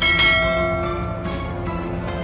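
A bright bell chime sound effect struck once at the start and ringing out over about a second, laid over background music.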